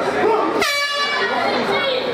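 An air horn sounds once for about a second, with a shorter second note right after, signalling the start of the round over crowd chatter.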